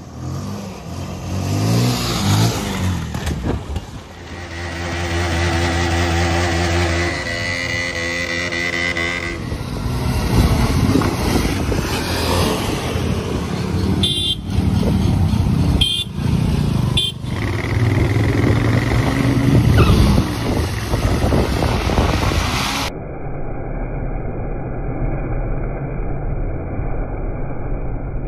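Sport motorcycle engines revving and accelerating as riders pull wheelies. The sound changes abruptly a few times as separate short clips are joined.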